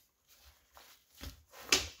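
Faint rustling of a nylon rucksack's webbing straps being handled, with one short sharp click about three-quarters of the way through.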